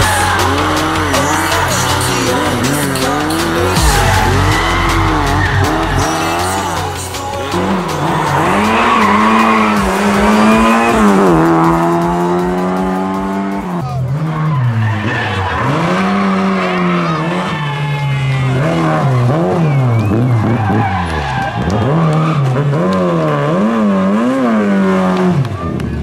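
Rally car engines revving hard through gravel corners, the engine note climbing and dropping with throttle and gear changes, with tyres skidding on loose gravel. Several cars pass in turn.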